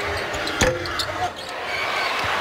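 A basketball bouncing on a hardwood court, one heavy bounce a little past halfway and lighter knocks after it, over steady arena background noise.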